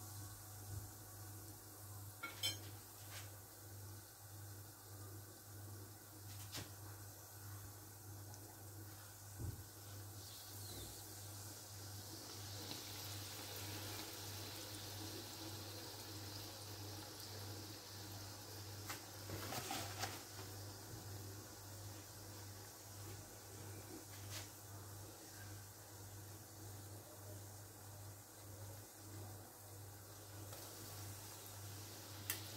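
Ring doughnuts frying in hot oil in a pan: a faint bubbling sizzle that grows louder for several seconds in the middle, as one doughnut is turned over. A few light clicks of a utensil against the pan are heard, along with a steady low hum.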